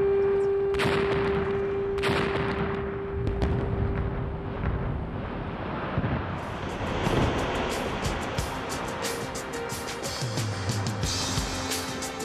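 Quarry rock blast using explosives, with sharp detonation reports about a second in and again about two seconds in, each followed by a long rolling rumble that dies away over several seconds under a steady hum. Background music with a beat comes in about halfway and carries on to the end.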